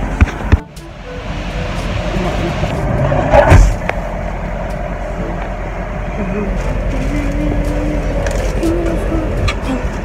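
Steady low rumble of a car cabin on the move, broken by a few sharp knocks and a loud bump about three and a half seconds in.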